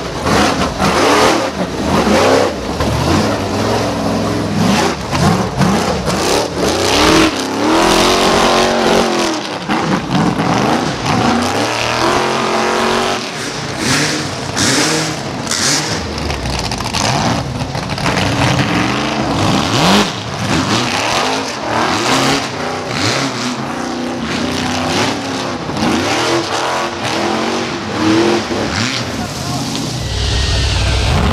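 Rock bouncer buggy engine revving hard in repeated rising and falling bursts as the buggy climbs a rocky hill, with voices of spectators.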